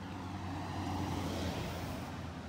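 A steady low outdoor rumble that swells a little around the middle and eases near the end.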